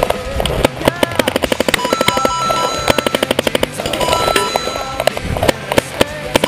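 Paintball markers firing in rapid bursts of sharp pops, about a dozen shots a second, in two main volleys with scattered single shots around them.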